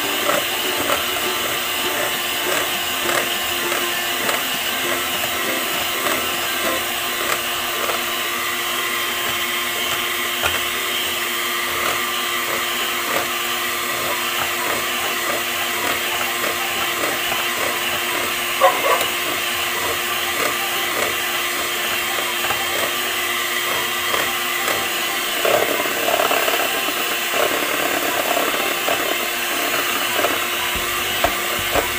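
Electric hand mixer running steadily, its beaters whirring through a thick creamy batter in a stainless steel bowl, with a few short knocks as the beaters touch the bowl.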